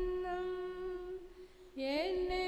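A single voice singing a hymn, holding one long steady note that fades out about a second and a half in; a new phrase begins with an upward slide near the end.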